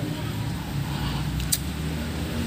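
Low steady rumble of a motor vehicle engine running in the background, with a single sharp click about one and a half seconds in.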